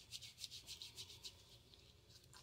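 Faint rubbing of wet hands worked together with a thick, gritty shea body scrub: a quick run of soft scratchy strokes that fades out after a little over a second.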